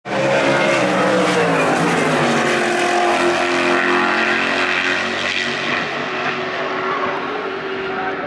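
IMSA race cars on track at racing speed, several engines sounding together. The engine note drops in pitch as a car goes past about a second in, and the sound eases slightly near the end.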